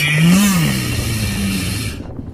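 A kazoo buzzing one note that slides up and back down, then holds lower for about a second before stopping near the end.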